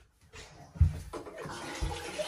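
Water running from a bathroom tap into a small washbasin, a steady splashing hiss, with two low thumps.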